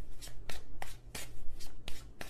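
A tarot deck being shuffled by hand: a run of quick, irregular card snaps, several each second, over a faint low hum.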